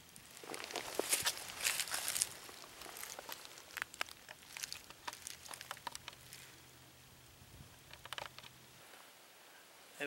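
Footsteps crunching and rustling through dry fallen leaves, heaviest in the first couple of seconds, then lighter, scattered steps that fade out near the end.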